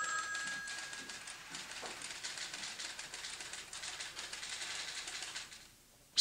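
Faint crackly background noise with fine, rapid ticking. It fades slowly and cuts off to dead silence just before the end.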